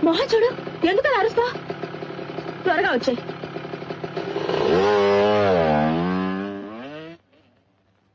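A motor scooter's small engine idling, then revving up from about four and a half seconds in as it pulls away, its pitch dipping and then rising. The engine sound cuts off suddenly near the end.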